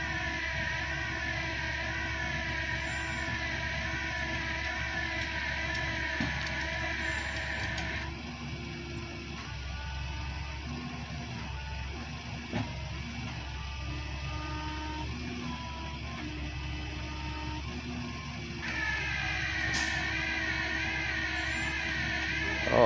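A rollback tow truck's engine running steadily while a big cottonwood log is let down its tilted flatbed. Through the middle of the stretch a plucked-string melody of single notes plays over it.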